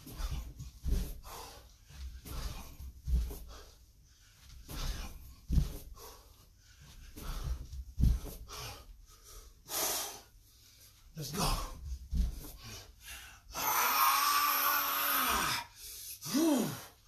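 A man breathing hard while doing bends and thrusts (burpees): short sharp breaths and dull thumps every couple of seconds as he drops and comes back up. Near the end comes one long, loud, breathy exhale with some voice in it, lasting about two seconds.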